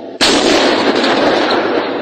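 An explosion: a sudden loud blast about a fifth of a second in, followed by a dense noisy wash that fades only slowly.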